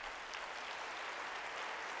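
Audience applauding, a steady spread of clapping.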